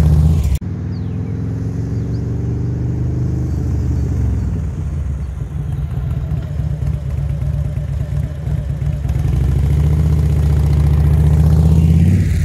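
Big V-twin touring motorcycle pulling away in first gear, its engine note rising for about three seconds, then dropping back as the rider brakes hard to a stop, part of an emergency-braking practice run. The engine then runs low and steady, growing louder near the end.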